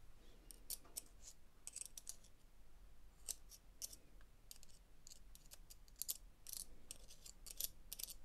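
Faint, irregular light clicks and scratches of a small brush spreading grease over the metal planetary gears of a Makita DF001G drill's gearbox.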